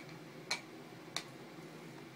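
Three short, sharp clicks of small plastic knocks, spaced about half a second apart, as a baby's hand knocks on the edge of a plastic toy laptop.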